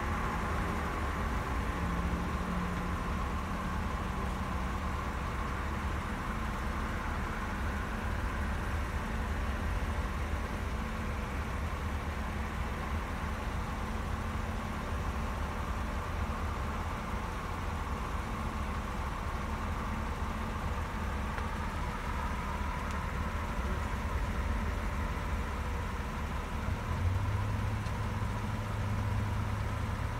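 Engine of a parked Chevrolet police SUV idling with a steady low rumble; a deeper steady hum joins a few seconds before the end.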